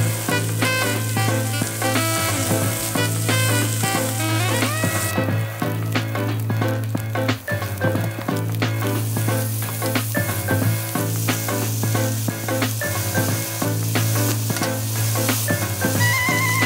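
Bamboo shoots sizzling as they are stir-fried in a nonstick frying pan, with chopsticks clicking against the pan now and then, over background music.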